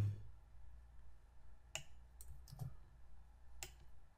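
A few quiet, sharp clicks of a computer mouse and keyboard, spaced irregularly, as a text box is duplicated with Ctrl+D and dragged into place.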